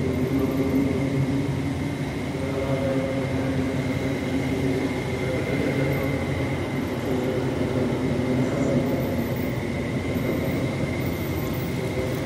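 A man's voice reciting over a loudspeaker system in long drawn-out, held notes. A faint steady high tone runs under it.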